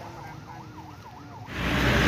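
Emergency-vehicle siren, faint, sweeping rapidly up and down in pitch about four times a second. About one and a half seconds in it gives way to much louder engine and road noise.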